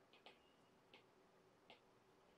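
Near silence broken by a few faint, short clicks, about four in two seconds: a stylus tip tapping on a tablet screen while handwriting.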